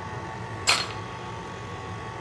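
Stand mixer motor running on low, a steady hum as its beater mixes donut batter. One short sharp clink about two-thirds of a second in.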